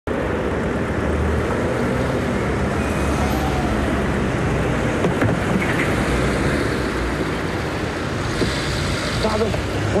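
Street traffic: car engines running with a steady low hum under an even wash of road noise.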